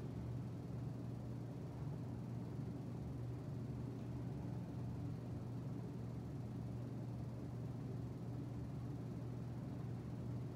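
Steady room tone: a constant low hum with a faint hiss above it, even throughout with nothing standing out.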